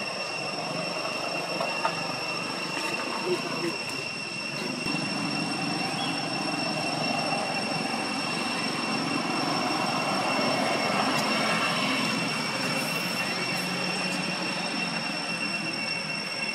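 Outdoor ambience: a steady high-pitched whine over a low background hum that swells slightly in the middle, with two brief soft taps in the first few seconds.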